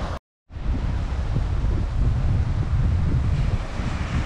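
Wind buffeting the microphone over the steady rush of ocean surf on a beach. The sound cuts out completely for a moment just after the start, then comes back.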